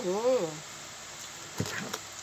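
A hummed 'mm-hmm' at the start, then about a second and a half in a short crackle and knock as a knife cuts through crisp roast duck skin onto the cutting board.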